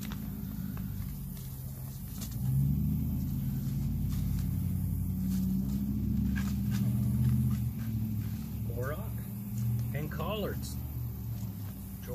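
A motor engine running with a steady low hum, growing louder about two and a half seconds in and easing off after about eight seconds. A brief muttered voice comes near the end.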